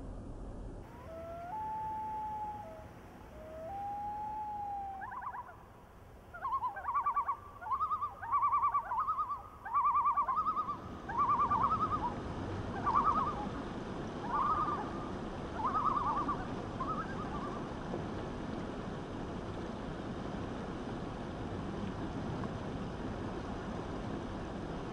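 A bird calling: two long whistled notes, then a long run of short repeated calls that slow toward the end. Under it runs the steady rush of shallow river water over rocks, which grows louder about ten seconds in.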